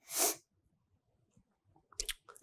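A man's short, sharp intake of breath through the mouth, close on a clip-on microphone, followed by near silence and a faint mouth click near the end.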